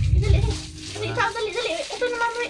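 Voices talking in a small room, with a short low rumble in the first half second.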